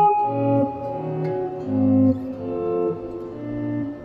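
Electric guitar playing a short cycle of sustained chords, changing about every half second, that leads back down to a D-flat chord in first inversion.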